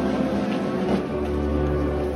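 Banda de música (brass and wind band) playing a slow processional march behind a Holy Week palio, with held chords over a steady low bass line.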